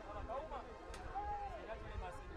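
Faint shouts and calls of voices from around a football pitch, one call held for about half a second, over a low rumble, with a single sharp click about a second in.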